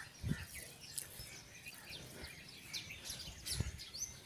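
Birds chirping and twittering in short, scattered calls over a low outdoor background, with two soft low thumps, one just after the start and one near the end.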